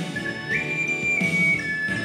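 Soprano ocarina playing a melody over an instrumental backing track: a held note that leaps up to a higher one about half a second in, steps down slightly, then drops back to the first note near the end.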